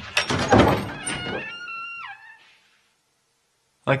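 Recorded door sound played back over loudspeakers: a clatter of thunks and rattles as the door is opened, then a squeaky hinge creak that drops in pitch and fades out.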